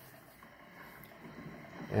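Near-quiet pause: faint room tone with no distinct event, and a man's speech starting right at the end.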